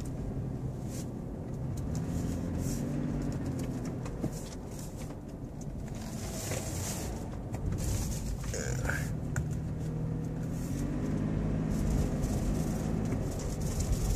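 Inside the cabin of a 2015 Toyota 4Runner on the move: its 4.0-litre V6 engine runs with road noise, the engine note rising twice as it accelerates, a couple of seconds in and again near the end, then dropping back.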